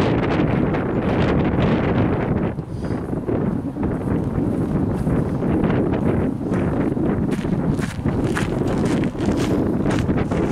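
Wind buffeting the microphone: a steady low rumble, with a few faint ticks in the second half.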